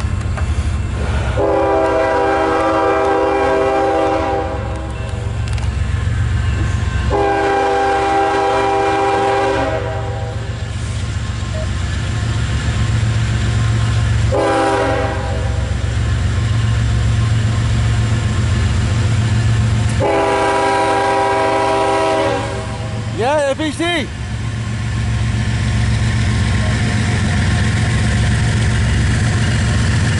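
Norfolk Southern freight locomotive's multi-chime air horn sounding the grade-crossing signal, long, long, short, long, as the train approaches. The low, steady rumble of its diesel engines runs underneath.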